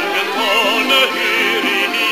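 A man singing a song with a strong vibrato on his held notes, over musical accompaniment.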